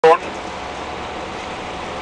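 Steady engine and road noise heard from inside a moving bus, after a brief snatch of voice right at the start.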